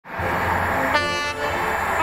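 A train's horn sounding one short blast about a second in, over the steady rumble of an approaching train.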